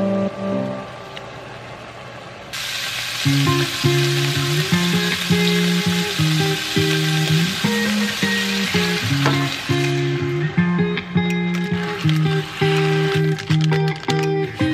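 Browned ground meat sizzling in a frying pan, the hiss starting suddenly a few seconds in and dying away after about ten seconds. Background music with a slow melody of held notes plays throughout.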